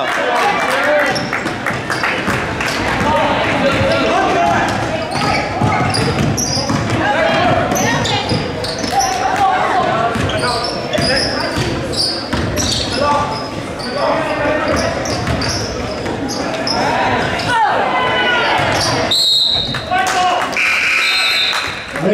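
Basketball game sounds in a large gym: the ball dribbling on the hardwood floor among the voices of players and spectators, with the hall's echo. A few short high squeaks come near the end.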